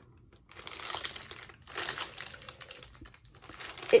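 Clear plastic bags of diamond painting drills crinkling in irregular bursts as a hand rummages through the bundle of small zip baggies, starting about half a second in and dying away near the end.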